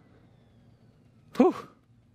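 A man's short excited 'whew!' about one and a half seconds in, its pitch rising and falling, over quiet room tone.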